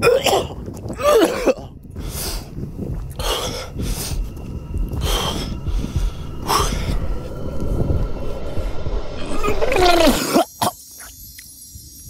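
A man coughing and breathing hard while running, with short, harsh coughs coming roughly once a second over a low rumble for about ten seconds. He is sick and pushing through training. The sound drops away suddenly near the end.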